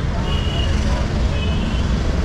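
Busy street traffic with a steady low rumble of motor vehicles and auto-rickshaws, and two short high beeps, one about half a second in and another just before the end.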